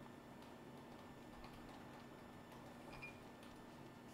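Near silence: room tone with a faint steady hum and a few faint, scattered ticks.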